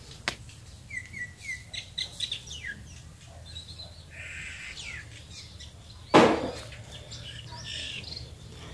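Small birds chirping in short, quick calls during the first few seconds. About six seconds in, a single short, loud burst of sound, louder than the chirps, cuts across.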